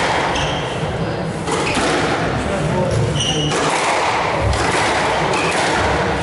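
Squash rally: the ball cracking off rackets and the walls about once a second, with a few short high squeaks of court shoes on the wooden floor, over murmuring spectators in the hall.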